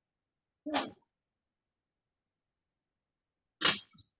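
Two short vocal sounds with dead silence between: the word "so" just under a second in, then near the end a brief, breathy burst of voice, brightest in its hissy upper range.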